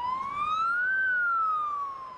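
Emergency vehicle siren wailing: one slow sweep that rises in pitch for about a second, then falls.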